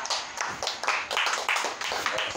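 A few people clapping their hands, quick uneven claps overlapping one another.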